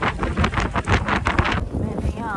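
Wind buffeting the microphone over the low rumble of an open safari jeep driving along a dirt track.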